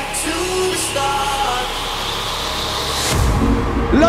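Electronic dance music played live through an arena sound system. A melodic line runs over a building swell of noise, and heavy bass comes in about three seconds in.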